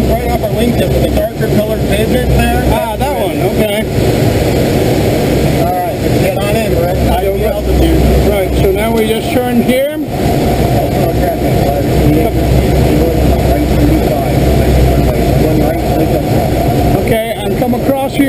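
Loud, steady rush of air around a glider in flight, heard inside the cockpit, with indistinct wavering voice-like sounds under it.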